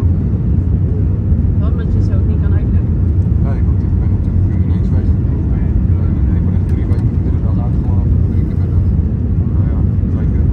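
Steady low roar of an Airbus A320-family airliner's engines and airflow heard from inside the passenger cabin on final approach, flaps extended. Faint voices murmur in the cabin under it.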